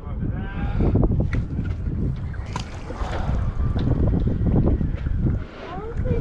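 Wind rumbling on the microphone of a body-worn camera on a small boat, with faint voices in the background and a few light knocks.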